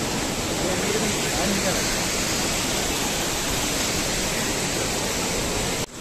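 Steady rush of a nearby mountain stream or waterfall, an even roar, with faint voices underneath; it breaks off abruptly near the end.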